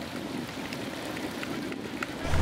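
Stadium crowd ambience: a steady wash of noise from the packed stands at a baseball game.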